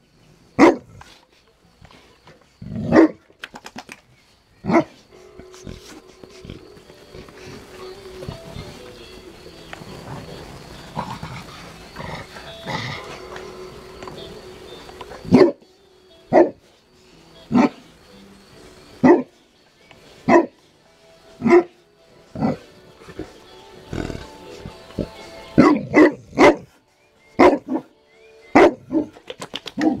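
A large mastiff barking in single deep barks, one every second or so, with a quieter stretch in the middle and quicker barks near the end.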